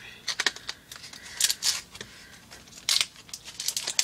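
Plastic and card packaging of a cosmetic eyeliner pencil crinkling and tearing as it is opened by hand, in short, irregular rustles.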